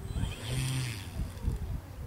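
Wind buffeting the microphone, with a distant engine running whose pitch slides downward.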